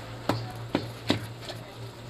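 Three sharp knocks about half a second apart, then a fainter fourth: a cooking utensil striking a large aluminium cooking pot while bihon noodles are stirred and vegetables added. A steady low hum runs underneath.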